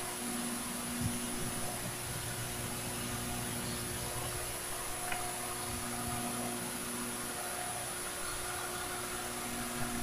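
Steady hiss and low hum of a quiet church broadcast's background, with a faint knock about a second in and a small click about five seconds in.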